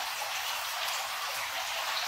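Water running steadily into a fish tank: an even hiss with no distinct splashes.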